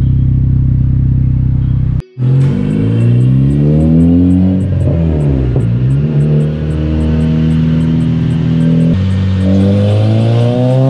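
Turbocharged Honda K24 2.4-litre four-cylinder in a Civic Si running on a chassis dyno: steady at first, then after an abrupt break about two seconds in it revs up with its pitch climbing, holds, and climbs again near the end. This is its first dyno pull, which the owner says ran really rich.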